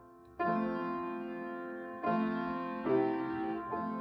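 Slow, quiet piano music: a chord struck about half a second in, another at two seconds and two more near the end, each left to ring and fade.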